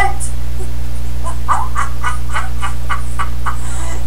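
Chihuahuas at close range making a run of short, quick sounds, about three or four a second, while squirming and licking at someone's face. A steady low electrical hum runs underneath throughout.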